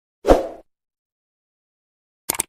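Edited-in sound effect of a subscribe-button animation: one short, sudden hit with a deep thud, about a quarter second in, fading within half a second.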